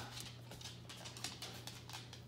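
Faint scattered clicks of a husky's claws on a hard floor, over a low steady hum.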